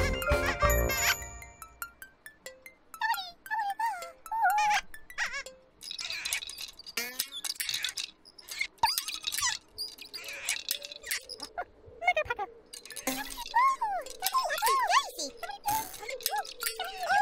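Gentle children's-show music that stops about a second in, followed by high, squeaky, wordless character voices in short rising and falling chirps, with light clicks between the bursts.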